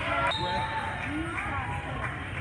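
Voices of players and spectators in a gymnasium, with a volleyball bouncing on the hardwood floor.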